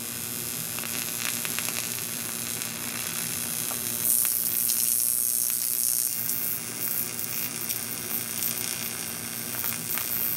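AC TIG welding arc on 3003 aluminum sheet fed with 6061 filler rod: a steady hiss with a low hum underneath, growing louder for a couple of seconds about four seconds in.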